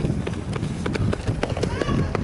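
Quick, irregular taps of a runner's spiked shoes striking a synthetic track, over the murmur of trackside spectators' voices.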